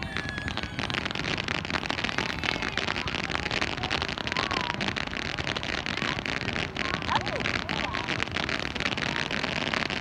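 Fireworks going off: a dense, steady crackling of many small bursts with no pause.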